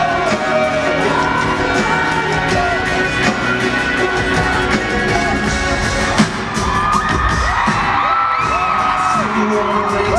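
Pop-rock band playing live in an arena, with a lead voice singing over drums, bass and electric guitar. A sharp hit stands out about six seconds in, and a long held note comes near the end.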